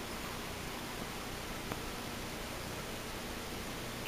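Steady low hiss of room tone and recording noise, with one faint tick a little under halfway.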